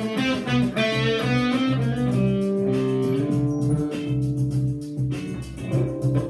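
Les Paul-style single-cut electric guitar picking single-note phrases in C Lydian over a sustained low note. The notes are busy at first, held longer in the middle, and move quickly again near the end.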